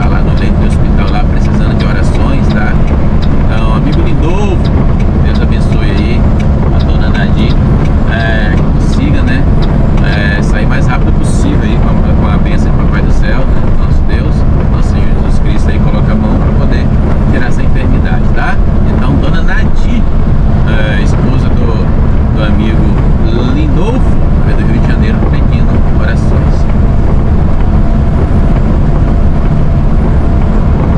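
Mercedes-Benz Atego truck's diesel engine running steadily at cruising speed, heard from inside the cab, with tyre noise from the wet road.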